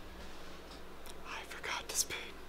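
Faint whispering voice over a low, steady electrical hum in a small room.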